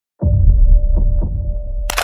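Logo sting sound design: a loud, deep bass rumble that starts suddenly just after the start and carries a steady mid-pitched tone and a few soft pulses, ending with a sharp, bright hit.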